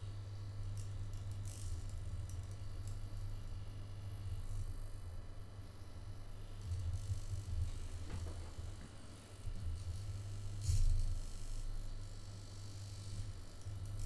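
Small hobby servos of a 3D-printed robot arm buzzing low while holding and shifting position as the arm is lined up, with a few faint clicks and a brief louder knock about eleven seconds in.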